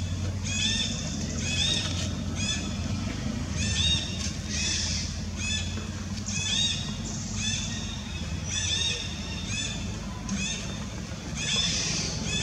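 High-pitched chirping calls repeating about twice a second, each a short rise-and-fall, over a low steady hum.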